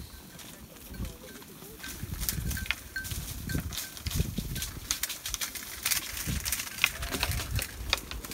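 A flock of sheep jostling and feeding on carob pods knocked down from the tree: many scattered sharp clicks and snaps with low thuds, and a faint bleat about half a second in and again near the end.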